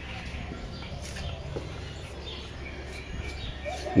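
Faint bird chirps over quiet outdoor background noise.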